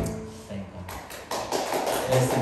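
The last guitar chord of a worship song dies away, and a soft tap sounds about half a second in. A man's voice then starts speaking quietly at a close microphone partway through.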